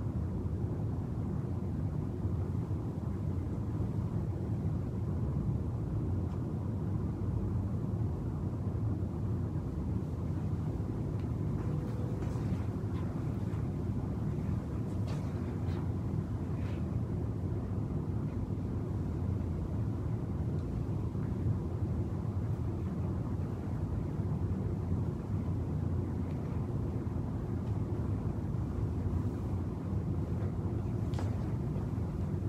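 Steady low background rumble with no clear source, with a few faint clicks about halfway through.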